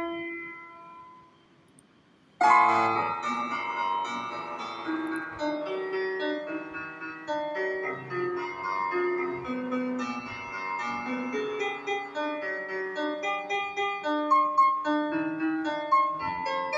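Classical piano music: a chord rings and fades away, then about two and a half seconds in a fast, many-noted piano piece begins and carries on.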